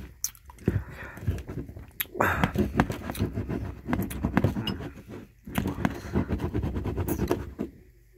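Close-miked chewing of a mouthful of food, with many small wet clicks and smacks, in two long runs with a brief pause about five seconds in.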